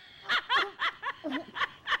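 A run of about seven short, snickering laughs.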